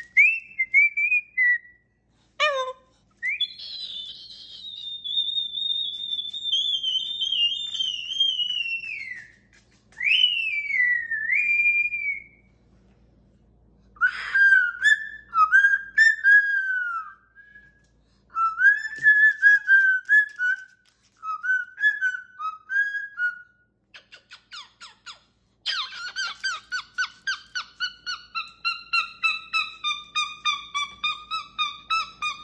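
Moluccan cockatoo whistling a tune: a long high whistle that slowly falls, then short gliding whistled notes with pauses. Near the end comes a fast run of short repeated calls, about three a second.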